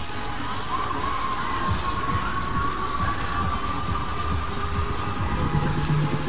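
Funfair ambience: music playing from the rides over the noise of a crowd and children shouting. A long high note is held through much of it, and a low steady tone comes in near the end.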